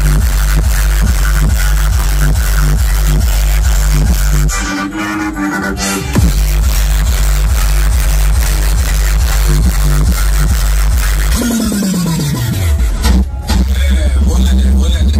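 Electronic dance music with very heavy bass played loud through a truck-mounted DJ speaker stack. There is a short break about five seconds in, and a falling bass sweep near the end that leads back into the full bass.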